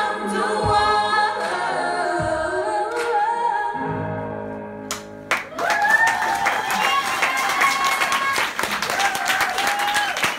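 Female vocalist singing the final held notes of a slow ballad over quiet musical backing, fading out about four seconds in. Audience applause breaks out about five seconds in.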